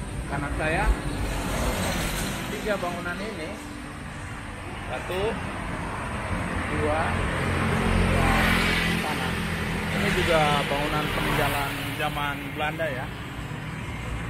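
Street traffic, with a vehicle passing about halfway through, its engine and tyre noise swelling and fading, under voices talking.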